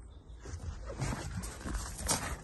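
Faint rustling and irregular low bumps of a handheld phone being moved about inside a car's cabin.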